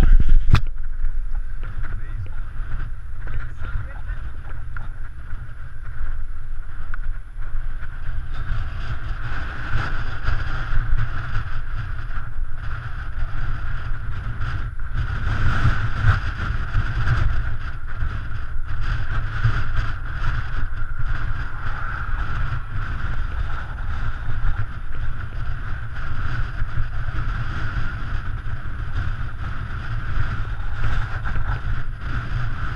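Wind buffeting the microphone of an action camera on a moving road bike: a heavy, uneven low rumble, with a steady higher whir from the riding underneath.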